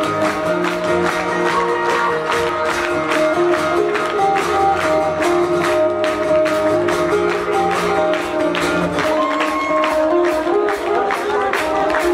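A live rock band plays an instrumental passage: sustained guitar notes over drums keeping a steady beat. The bass drops out about nine seconds in.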